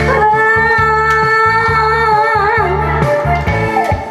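A woman singing a Korean trot song live into a handheld microphone over backing music with a steady bass beat. She holds one long note for about two and a half seconds, wavering as it ends.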